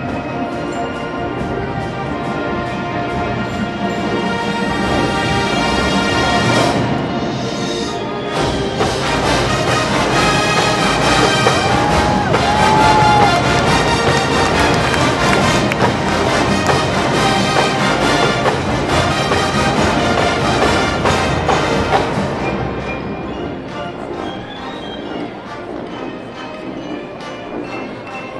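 College marching band playing a full-band number, horns and drums together. It swells to a loud passage that holds through the middle, then eases down near the end.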